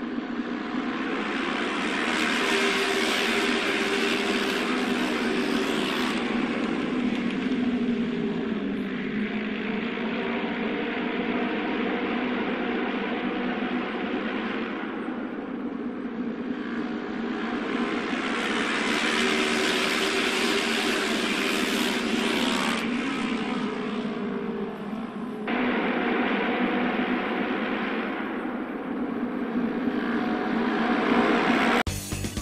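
Auto race motorcycles running laps on the track, their engines swelling loudest as the bikes pass about two to six seconds in and again past the middle. The sound changes abruptly about twenty-five seconds in.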